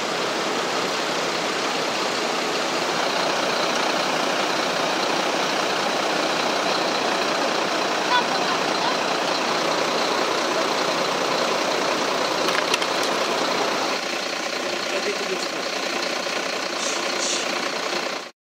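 Steady drone of idling fire-engine diesel engines, with voices in the background. The sound drops a little and changes about fourteen seconds in.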